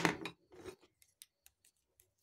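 Black felt-tip marker drawing on paper: one short, louder scratching stroke at the start, then a few faint ticks of the tip on the sheet.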